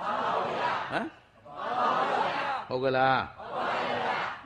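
A congregation of many voices answering together in unison, with one man's voice speaking briefly in between.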